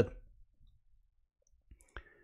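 Near quiet room tone with two small clicks near the end, the second one sharper.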